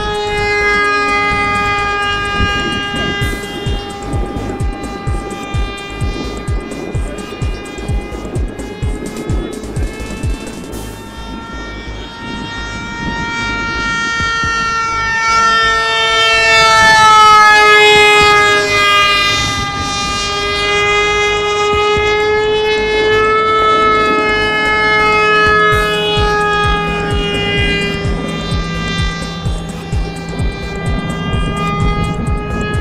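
The electric motor and pusher propeller of a foam RC jet whine steadily in flight. The pitch slides up and down with throttle and passes, and the sound is loudest about two-thirds of the way through as the plane comes close. A low, uneven rumble sits underneath.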